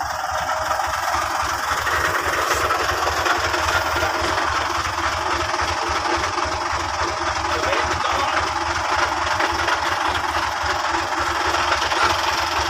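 Diesel engine of a Fuso truck idling steadily, with a fast, even low knocking beat.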